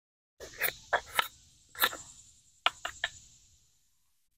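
Taps, knocks and scraping on a wooden birdhouse as it is handled and cleared out: about eight sharp taps with rustling scrapes between them, starting about half a second in.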